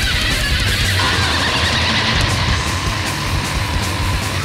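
Extreme metal band playing an instrumental passage: heavily distorted electric guitars over drums and cymbals, with a long high note held from about a second in.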